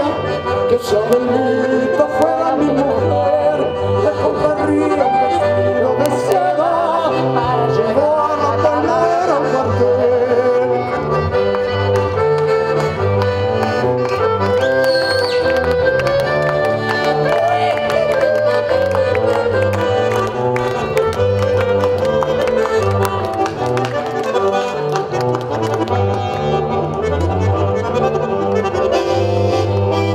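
Instrumental break in a folk song: a piano accordion carries the melody over a rhythmic cello bass line, with scattered light clicks of hand claps.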